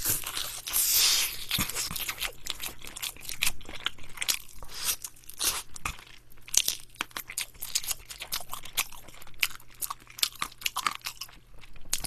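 Close-miked crunching and chewing of Korean seasoned (yangnyeom) fried chicken: a drumstick bitten into, then chewed with many irregular crisp crunches, loudest in the first second or so.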